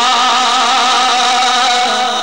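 A man's voice holding one long sustained note in Punjabi devotional singing, amplified through a microphone.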